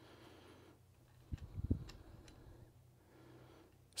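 Faint clicks and low knocks of a RotoBoss Talon rotary chuck's jaws being handled and seated by hand, in a short cluster about a third of the way in, with a few lighter ticks after it.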